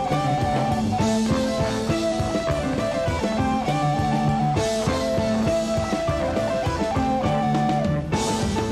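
A Chilean progressive rock band playing live: electric guitar holding sustained notes over bass and drum kit, with a louder crash-like accent at the very end.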